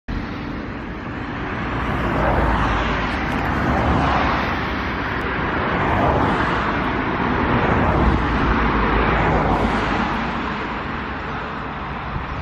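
Motorway traffic: cars passing one after another, the noise swelling and fading several times.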